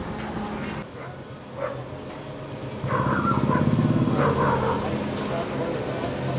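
Diesel engine of a self-loading concrete mixer running steadily, with people's voices over it from about halfway.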